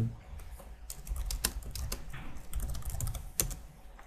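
Typing on a computer keyboard: a short run of separate keystrokes, entering a one-line command.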